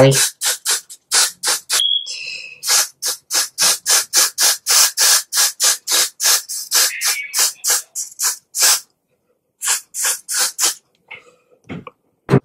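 Aerosol can of Got2b hair spray fired in many short bursts of hiss, about three or four a second, with a pause near the end before a few more.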